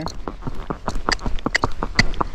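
Hooves of a Missouri Fox Trotter horse clip-clopping on a paved road under a rider: a quick run of hoofbeats, several a second.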